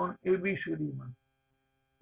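A man's voice speaking for about a second, then stopping.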